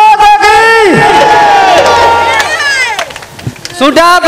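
Men in a crowd shouting long, drawn-out cries that fall in pitch at their ends, over crowd noise. The cries die down about three seconds in and start again at the very end.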